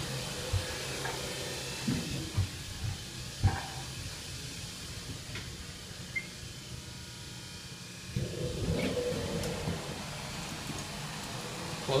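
Elevator car interior with a steady low hum and a few clicks and knocks in the first few seconds. About eight seconds in, a louder rumbling slide runs for two seconds or so: the elevator doors closing after the close button is pressed.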